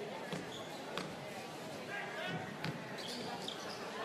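A basketball bounced a few times on a hardwood court in a free-throw routine, each bounce a sharp knock, over the murmur of a large arena crowd.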